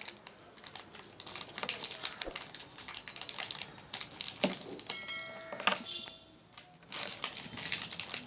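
Plastic packaging of a small electronics module being opened and handled: irregular crinkles, light clicks and taps. A short ringing tone with several pitches sounds about five seconds in.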